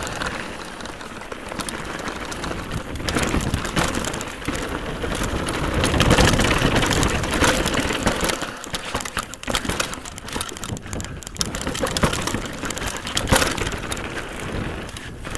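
Nukeproof Scalp downhill mountain bike descending a loose rocky gravel trail: tyres crunching and clattering over stones with a constant rattle of the bike, loudest about six seconds in.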